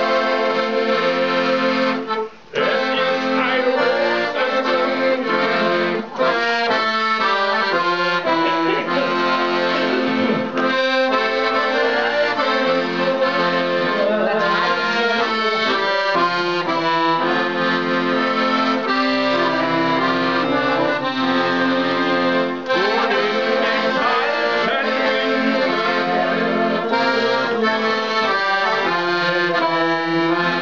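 Piano accordion played solo: a tune with held chords and bass notes, without a pause except for a short break about two seconds in.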